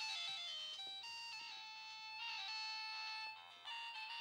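Mobile phone ringtone playing an electronic melody of stepped notes for an incoming call. It breaks off briefly near the end and starts again.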